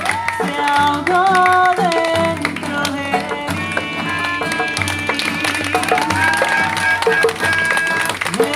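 Live acoustic street music: an acoustic guitar strumming a steady beat under a singing voice, with long held notes from a melodica.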